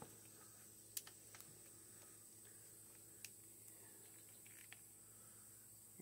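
Near silence with a few faint clicks, the clearest about a second in and others scattered later: hands handling and turning the plastic loop handle on a string trimmer's metal shaft.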